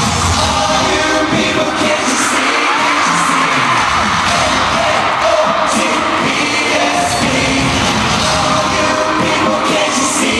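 Live amplified pop music with singing at an arena concert, heard loud from among the audience, with the crowd cheering and shouting over it.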